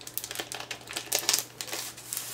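Clear plastic packaging crinkling and card sticker sheets being handled and slid apart: a quick, irregular run of small clicks and rustles.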